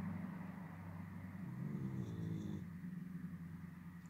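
A low, steady hum with a brief higher-pitched tone near the middle.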